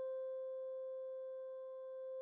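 Soundtrack music: one held keyboard note slowly dying away.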